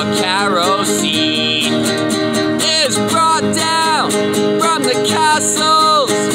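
Acoustic guitar strummed steadily in a folk-ballad accompaniment, with a man's voice singing the melody over it in long, bending phrases.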